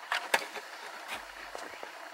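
A few light clicks and taps of handling on the plastic dashboard, two close together near the start and a fainter one about a second in, over a faint hiss.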